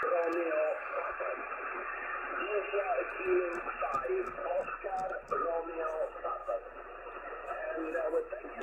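Amateur radio voice received on 40 metres (7.177 MHz single sideband) through the Yaesu FT-710 transceiver's speaker: a station talking in thin, band-limited audio over a steady hiss of band noise.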